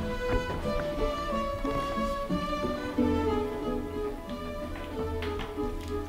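Background film-score music with held, bowed string notes that change every second or so over a steady low bass.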